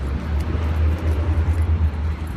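Steady low rumble of city street traffic, picked up by a phone microphone.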